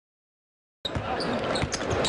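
Silence, then about a second in the sound cuts in suddenly: a basketball game in an arena, with a ball bouncing on the hardwood court and sharp short knocks over a steady background noise.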